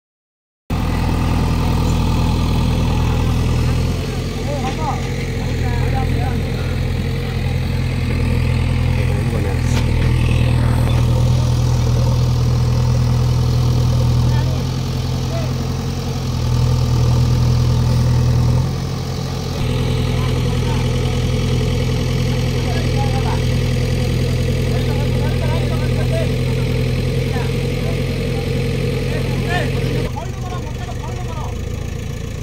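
JCB backhoe loader's diesel engine running, swelling louder twice (about a third of the way in and again past the middle) and easing back between, as the machine is worked. Faint voices of onlookers sit underneath.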